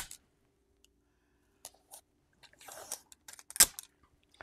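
Heat-resistant tape pulled from a desktop tape dispenser and torn off on its cutter: a sharp click, a few light clicks, a short rasp of tape unrolling about three seconds in, then a loud snap as it is cut.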